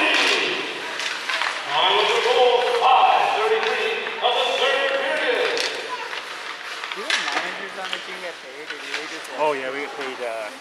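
Raised, fairly high-pitched voices calling out in an ice arena, loudest in the first half, with a few sharp knocks about seven seconds in.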